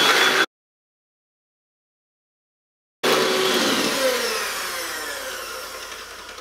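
A 20-year-old electric hand whisk beating double cream into thick whipped cream. It cuts off abruptly into dead silence for about two and a half seconds, then runs again, its whine falling in pitch and gradually fading.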